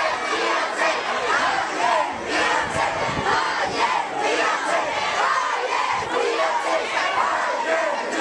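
A large crowd of marchers, many voices raised at once in a dense, unbroken din at a steady loudness.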